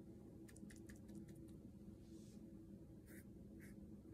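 Near silence, with a few light clicks, then faint strokes of a watercolor brush on paper.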